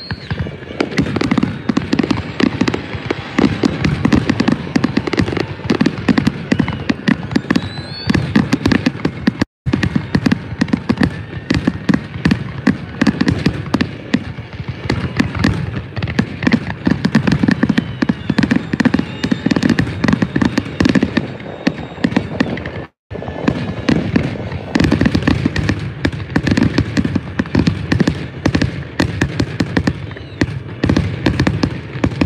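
Fireworks display going off in a continuous barrage: dense, rapid bangs and crackling from aerial shell bursts. The sound cuts out briefly twice.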